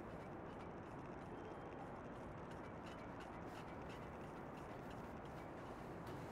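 Quiet room tone: a faint, steady hiss with no distinct sound events.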